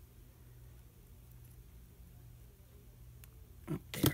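Quiet room tone with a faint, steady low hum. Just before the end come a brief vocal sound and a sharp click.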